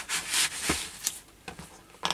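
Paper tissue rubbing over a vintage methylated-spirits stove to wipe up leaked meths, a rustling wipe loudest in the first half-second, followed by a few light knocks as the stove is handled.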